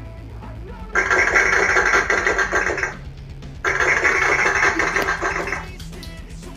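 Child's toy electronic drum pad kit played with sticks, giving two sustained electronic sounds of about two seconds each, starting sharply about a second in and again just past halfway, over a steady low hum.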